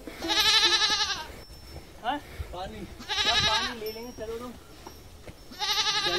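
Three loud, wavering animal calls, each between half a second and a second long, spaced about three seconds apart.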